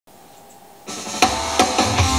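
Faint hiss, then about a second in the music starts with a drum fill: a cymbal wash and three quick drum hits leading into the band.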